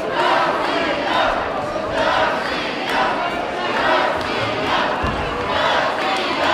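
Arena crowd chanting in unison, a loud swell of many voices about once a second.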